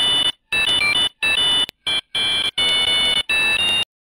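A run of high electronic beeps: steady tones that step between a few pitches, in short bursts with brief gaps, stopping abruptly just before the end.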